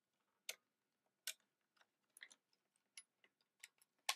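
Light, scattered clicks and taps, about half a dozen spread over a few seconds, from hands handling a MIDI cable and gear at a desk.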